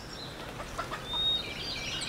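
Birds chirping faintly in the background, with scattered short high calls and one brief thin whistled note a little after a second in.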